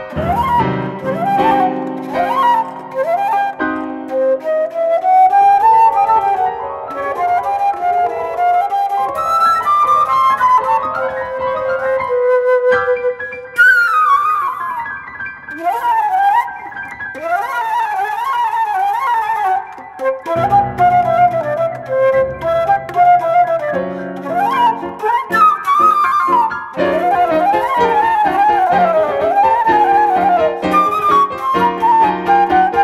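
Improvised flute and piano duet: the flute plays quick falling and rising runs over low piano notes and chords, holding one long note about midway.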